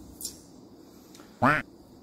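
One short quack-like call about one and a half seconds in, against low background.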